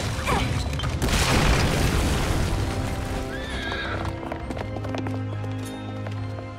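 Dramatic cartoon score with a winged horse-like creature neighing, and a loud rushing blast about a second in.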